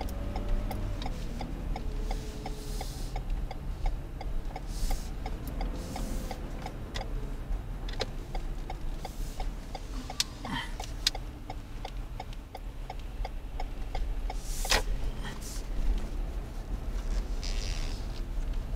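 Car turn-signal indicator ticking steadily inside the cabin, over low engine and road rumble and a French song sung softly on the car stereo. Two sharp knocks stand out, one about ten seconds in and a louder one near fifteen seconds.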